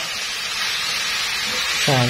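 Beef, onion and instant noodles sizzling in a hot stainless steel frying pan over high heat: a steady hiss.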